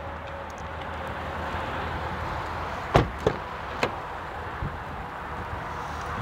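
2017 Jeep Cherokee rear door being opened: a sharp latch click about three seconds in, then a few lighter clicks and knocks, over a steady rushing background noise with a low hum.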